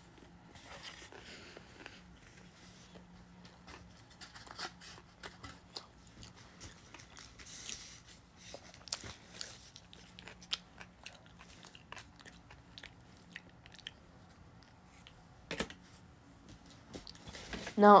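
Close-miked chewing of a sushi roll: soft, wet mouth sounds with many small irregular clicks and smacks.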